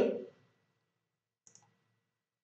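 A single faint computer mouse click about one and a half seconds in; otherwise near silence.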